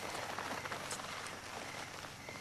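A couple kissing, with soft lip sounds and a faint rustle of clothing over a steady background hiss.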